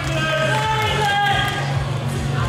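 Background music with a steady low bass line and sustained melodic tones, playing over the hall.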